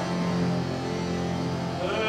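Instrumental accompaniment of an early Baroque opera holding low sustained notes, a quiet stretch of accompaniment between sung phrases.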